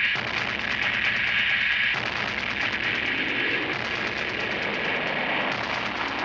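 Fight-scene soundtrack from a Bangla action film: background music mixed with a dense, steady layer of noisy action sound effects, with no speech.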